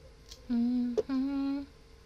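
A woman humming two short, steady notes, with a sharp click between them.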